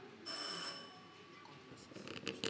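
A quiz bell rings once, a bright metallic ring with several clear overtones that fades out within about half a second.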